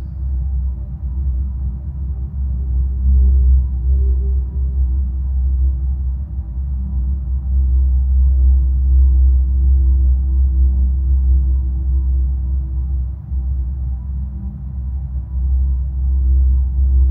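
Deep, steady ambient drone with a sustained tone above it, slowly swelling and easing: a binaural-beats music bed.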